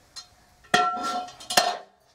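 Two sharp metallic clanks a little under a second apart, each ringing briefly: metal parts or tools knocking together as the washing machine's motor is being reassembled.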